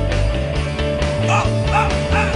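Instrumental rock music: the closing electric guitar solo over bass and drums, with a few short, sliding high notes about a second in and near the end.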